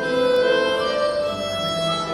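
Violin played live, bowing a few held melody notes that step upward, over fainter low accompaniment notes.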